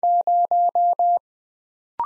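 Computer-generated Morse code sidetone sending the digit zero at 20 words per minute: five dashes in a row, one steady mid-pitched beep repeated with even short gaps, then silence.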